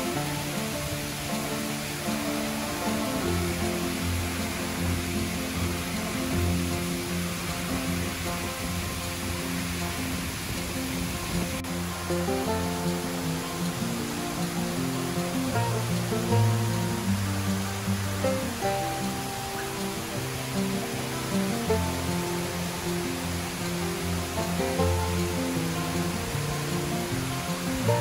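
Background music of held, changing notes over the steady rush of water sheeting down a tall semicircular fountain wall and splashing into the pool at its foot. The music is the more prominent of the two.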